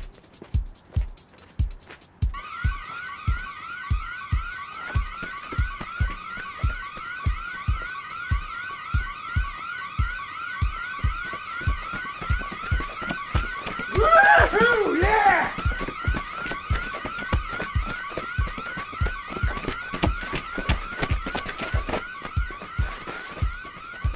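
A steady kick-drum beat of about two thumps a second, joined from about two seconds in by an electronic alarm siren: a rising wail repeating several times a second. Around the middle, a brief louder wavering burst stands out.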